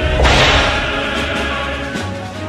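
Whoosh sound effect of a video transition: a sharp noisy sweep that starts a fraction of a second in and fades over about a second and a half, over background music.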